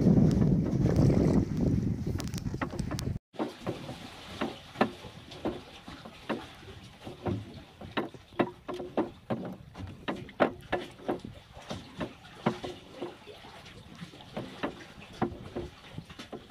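Sounds of a small wooden fishing boat at sea in a chop. For the first three seconds there is a loud low rumble of wind on the microphone. After a sudden break come irregular sharp knocks and splashes, about two or three a second, of waves slapping against the hull.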